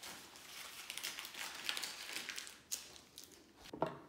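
A strip of blue painter's tape being crumpled by hand, a crackly crinkling for about three seconds, then a short click near the end.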